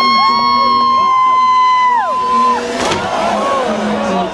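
Crowd of spectators cheering: long, high, held whoops for the first two and a half seconds, then a jumble of many voices shouting and cheering. Music plays underneath.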